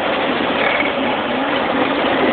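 Steady engine and road noise of a big diesel truck driving, heard from inside its cab.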